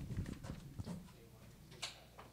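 Handling noise: a run of low knocks and thumps in the first second, then a single sharp click near the end.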